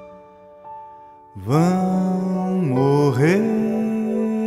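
Slow, tender ballad: soft held accompaniment notes, then about a second and a half in a male voice enters and sings a long sustained line that slides and bends in pitch.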